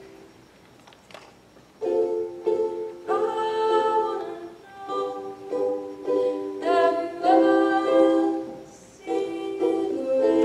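A ukulele strummed in repeated chords, with a young woman singing along. The playing breaks off at the start and comes back in about two seconds in.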